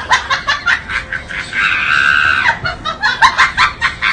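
Laughter in quick, repeated bursts, broken in the middle by a high-pitched scream held for about a second.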